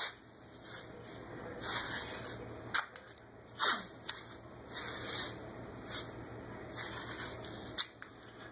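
White athletic tape being pulled off the roll and laid around an ankle: several short rasping peels of adhesive tape, with hands rubbing the tape down in between.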